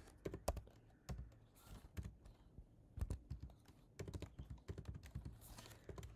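Typing on a computer keyboard: irregular keystrokes, coming in a quicker run about four seconds in.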